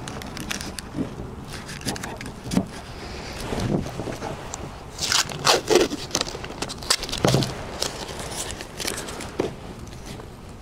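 Blue painter's tape being handled and pressed onto a rifle scope, with a strip pulled off the roll in a burst of ripping, crackling noise about halfway through.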